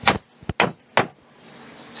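Steel hammer striking the end grain of a wooden post, about four sharp blows within the first second, driving the post's tenon tight into its mortise in the timber below.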